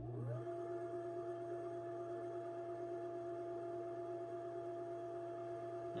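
ILG Model 423 three-phase induction motor, wired in delta for low voltage and fed from a rotary phase converter, starting across the line. Its whine rises to speed within about half a second and then runs steadily, over the steady electrical hum of the running phase converter.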